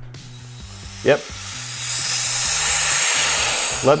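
Air hissing into a vacuum chamber through its opened valve, letting the vacuum off and bringing the chamber back up to room pressure. The hiss swells over about a second, then holds steady.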